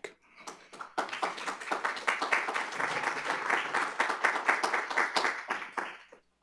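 Audience applauding: many hands clapping, a few claps at first, then dense from about a second in, fading out near the end.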